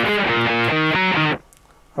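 Electric guitar tuned to C standard, played with heavy distortion: a single-note riff line of short notes changing about every quarter second. It breaks off abruptly about 1.4 seconds in because of a playing mistake.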